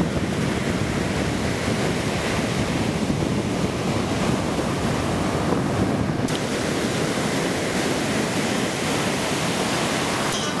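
Ocean surf: heavy waves breaking and rushing as a continuous wash of noise, with wind buffeting the microphone. The tone shifts abruptly, growing brighter, about six seconds in.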